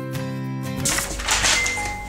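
Gentle acoustic guitar background music that breaks off just under a second in, replaced by a loud rushing whoosh of wind lasting about a second as sheets of paper are blown to the floor; a high held chime note comes in near the end.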